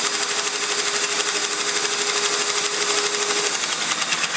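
Electric airless paint sprayer pump running with a rapid, even chatter and a steady whine; the whine drops out near the end.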